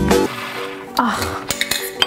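Background guitar music that cuts off a quarter of a second in, followed by a few light clinks and knocks of small glass jars and a metal lid being handled on a kitchen counter.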